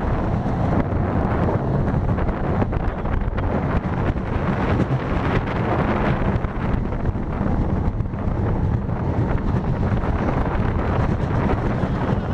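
Onboard a moving roller coaster train: a steady rush of wind on the microphone over the low rumble of the wheels on steel track.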